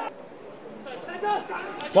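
Faint background chatter of several voices in football stadium audio, with a few broken speech fragments in the middle.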